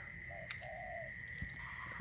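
A dove cooing faintly, two short low notes close together early on, over a steady faint high-pitched whine.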